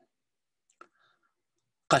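A pause between spoken words: near silence with one faint click a little under a second in, and speech starting again near the end.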